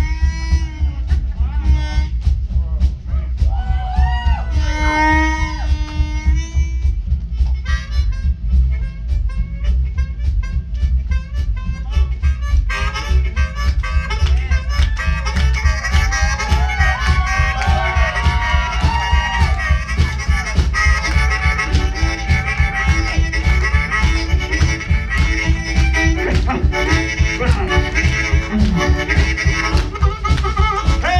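Live rockabilly band playing a blues-style number: amplified harmonica with bending notes over a steady driving beat of drums and upright bass, with electric guitar. The band gets fuller about twelve seconds in.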